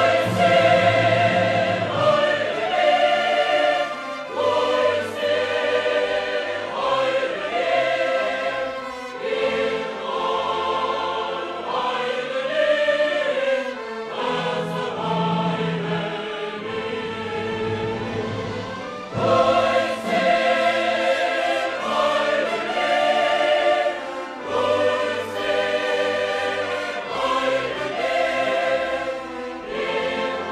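A choir singing with a symphony orchestra in a classical choral work, the voices held in long notes with vibrato. It swells and eases, dropping back about four seconds in and rising again about two-thirds of the way through.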